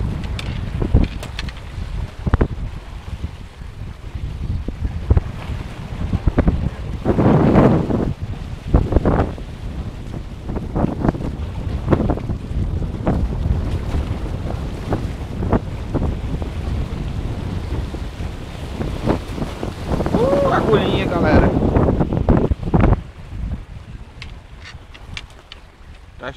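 Wind buffeting the microphone in uneven gusts, over surf washing and breaking against the boulders of a rock jetty.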